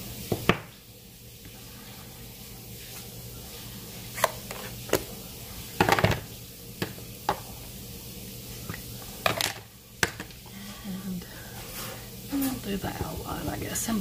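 Hard plastic clicks and knocks of clear acrylic stamp blocks and an ink pad being handled and set down on the craft table: about eight short, sharp taps spread out, the loudest about six and nine and a half seconds in, over a faint steady hum.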